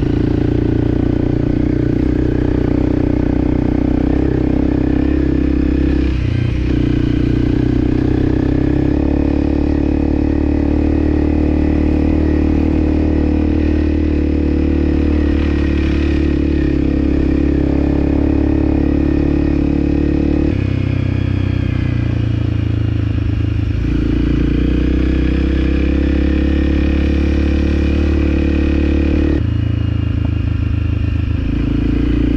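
Motorcycle engine running steadily while riding, heard from on the bike. The engine note shifts to a new pitch a few times as the throttle or gear changes.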